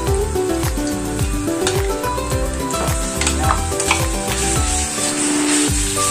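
Pieces of pork fat frying with onions in oil in a non-stick pan, sizzling as they are stirred with a wooden spatula; the sizzle grows stronger about four and a half seconds in. Background music with a beat and falling bass notes plays under it.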